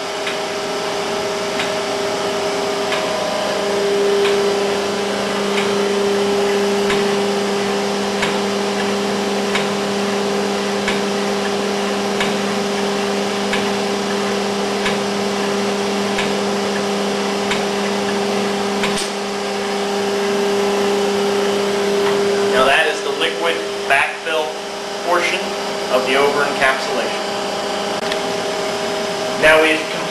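Schaefer Technologies LF-10 semi-automatic capsule liquid filler running a liquid backfill: a steady electric hum from its positive displacement pump and turntable drive, with faint regular ticks. The hum stops about three-quarters of the way through, and a voice follows.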